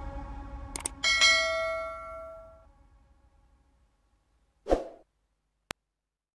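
Electronic background music fading out, then two quick clicks and a bell-like ding that rings out for about a second and a half: the sound effect of a subscribe-button animation. A short thump and a single click follow near the end.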